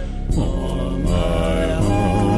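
Buddhist mantra chanting set to music, with held sung notes over a low steady accompaniment and a brief dip just at the start.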